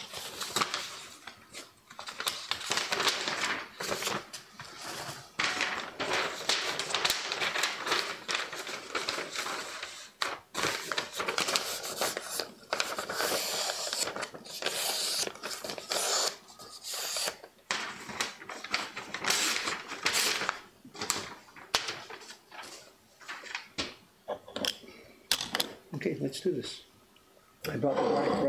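Sheets of paper being handled on a workbench: crisp rustling and scraping with many small clicks, coming in stop-start bursts.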